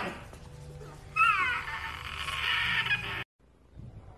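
Tiger cub calling: a loud mewing cry that falls in pitch, starting about a second in and running on for about two seconds before being cut off abruptly.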